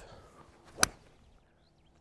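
A hybrid golf club strikes a golf ball off fairway turf: one sharp, crisp crack a little under a second in. The ball is well compressed and a divot is taken.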